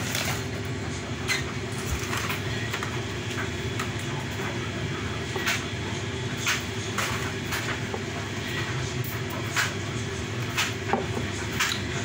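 A steady low hum with several fixed pitches, with scattered light clicks and taps as a glass and straw are handled.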